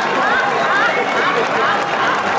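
Audience laughing, many voices at once, mixed with a dense patter of applause.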